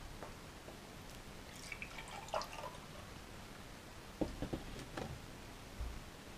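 Milk pouring from a carton into a glass, faint gurgling and dripping. A few light knocks follow in the last two seconds.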